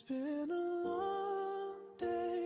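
A voice humming a slow melody, sliding up into long held notes, over soft music.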